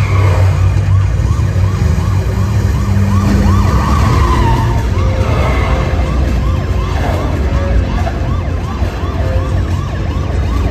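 Police siren yelping, a quick rising-and-falling wail about twice a second, over a loud deep engine rumble from a motorcycle and car chase played through a theatre sound system.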